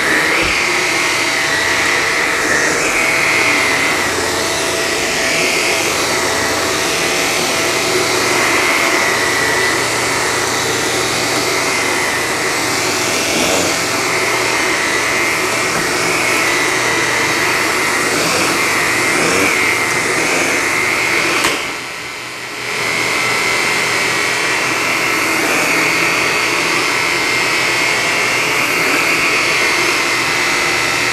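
Shark Apex Powered Lift-Away DuoClean Zero-M vacuum running with its power nozzle pushed over a low-pile rug: a steady, loud motor whine that drops in level briefly about two-thirds of the way through, then comes back.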